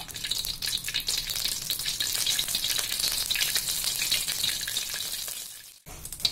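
Vegetable oil heating in a wok, sizzling steadily with fine crackles as it reaches frying heat. It fades and cuts out just before the end.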